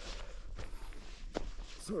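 A few faint crunches of snowshoe footsteps in snow, irregularly spaced, over a low background hush. A spoken word comes in at the very end.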